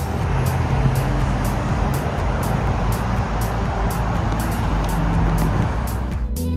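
Steady rush of road traffic on a town street, under quieter electronic background music with a regular ticking beat.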